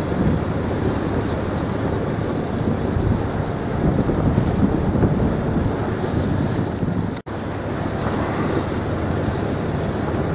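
Wind buffeting the microphone over choppy sea water rushing and slapping past a small boat under way, a steady rumbling wash with no clear engine note. The sound cuts out for an instant about seven seconds in.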